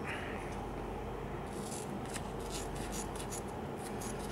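Scissors cutting lengthwise through a strip of kinesiology tape: a run of faint, crisp snips, thickest through the middle of the stretch, over a steady room hiss.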